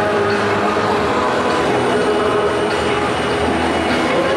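Stadium crowd noise: a steady, loud din of many voices from spectators in the stands.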